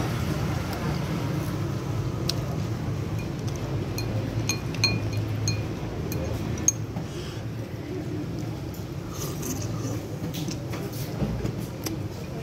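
Occasional light clinks of chopsticks against a ceramic bowl while eating noodles, over a steady low background noise.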